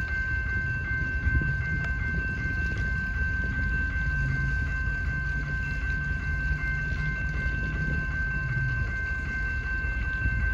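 Railroad grade-crossing warning bell ringing steadily in quick repeated strokes, sounding while the crossing is activated for an approaching train.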